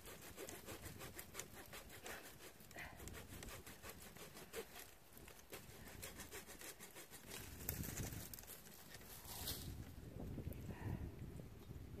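Faint crackling and clicking of bare apricot-tree twigs being handled and cut during pruning, with a few low rumbles about eight and eleven seconds in.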